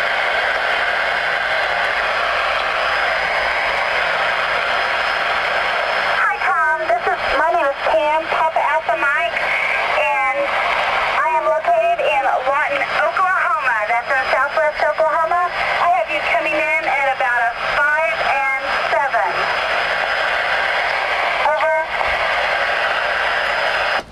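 Static hiss from the speaker of a Ranger RCI-69FFC4 10-meter radio on receive. About six seconds in, a distant station's voice comes through, thin and narrow-band, and it fades back to hiss a couple of seconds before the end.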